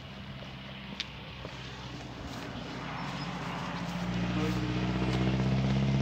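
A motor vehicle's engine drawing near: a steady low hum that grows steadily louder through the second half.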